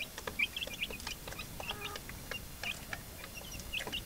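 Young native chickens peeping and chirping over and over while they feed, with scattered light taps of beaks pecking at plastic trough feeders. A single fuller cluck comes about halfway through.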